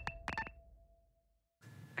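End of an intro music sting: two short electronic glitch blips about a third of a second apart, with a faint held tone fading out, then a moment of silence and faint room hiss.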